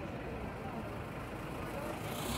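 City street ambience: a steady hum of traffic with people talking in the background.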